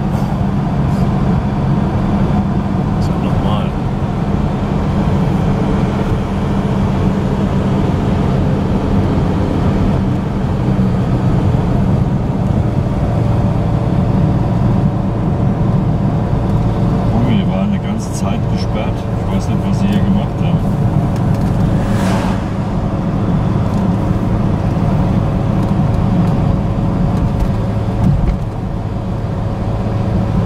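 Ford Capri's engine and road noise heard from inside the cabin while driving, a steady low drone. A few clicks and rattles come through about halfway, and the level dips briefly near the end.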